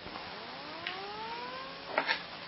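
Faint siren-like wail, a single tone with overtones climbing steadily in pitch over about a second and a half.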